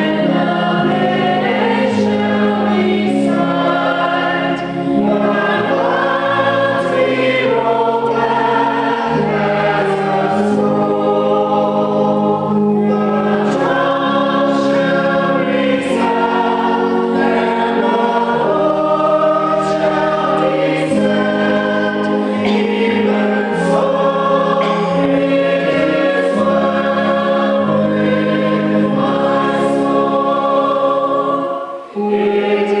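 A small group of voices singing a slow hymn together in harmony, holding each note for about a second before moving on.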